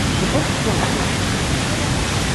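Wind rushing steadily over the camera microphone with a rumbling low buffet, and faint children's voices underneath.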